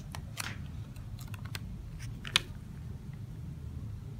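Paper sticker handled and pressed onto a sticker album page: a few light crackles and clicks, the sharpest about two and a half seconds in.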